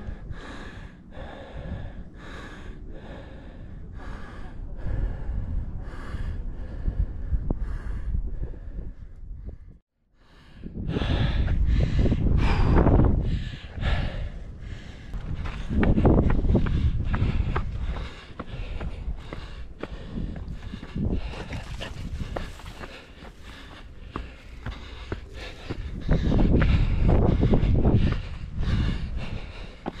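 A trail runner's heavy, labouring breathing and footsteps on a steep rocky climb, with loud surges of breath as he nears the top out of breath. The sound cuts out briefly about a third of the way in.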